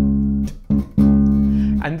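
Electric bass guitar playing a basic rock groove on one repeated note: a long note, a short one, then another long one. The notes fall on beat one, the "and" of two, and beat three, following the kick-drum pattern of a standard rock feel.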